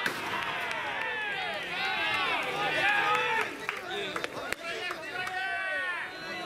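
Several men's voices shouting and calling out over one another without a break, with a few sharp clicks among them.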